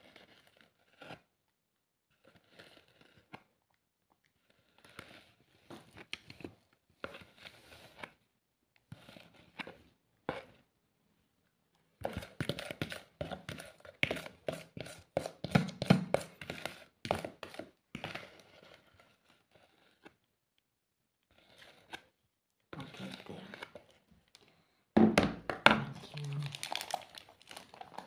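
Thin plastic bag crinkling, with a spoon scraping and knocking in a plastic bowl as icing is scooped into a makeshift piping bag. It comes in irregular crackly bursts, sparse at first and busiest about halfway through and again near the end.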